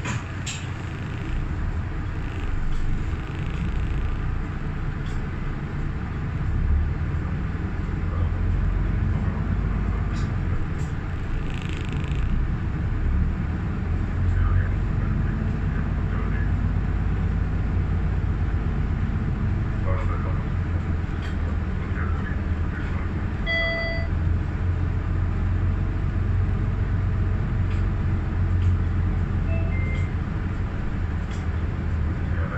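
City bus moving off and driving on, heard from inside the cabin: a steady low engine and road rumble that builds over the first several seconds as it gets under way. A short electronic beep sounds about three-quarters of the way through.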